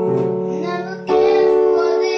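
Portable electronic keyboard playing sustained piano-voiced chords, with a new, louder chord about a second in, and a child's singing voice over it.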